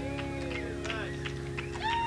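Electric band's amplified chord ringing out and slowly fading over a steady amplifier hum, with a few faint clicks. Near the end a high, wavering vocal wail starts up.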